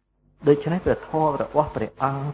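Speech only: a man talking in a steady lecturing voice, starting after a short pause.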